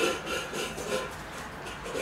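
A dog eating from its bowl on the floor, with uneven rubbing and scraping sounds.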